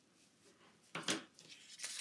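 Paper and vellum being handled on a work table: a short rustle about a second in and another near the end.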